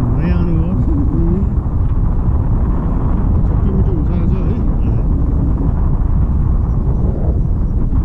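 Steady wind rushing over an action camera's microphone in paragliding flight. A person's voice comes through it briefly twice, near the start and about four seconds in.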